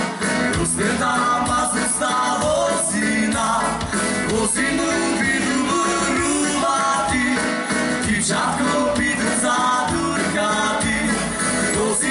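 A live dance band playing a waltz in the Slovak folk-pop style, as a full ensemble without a break.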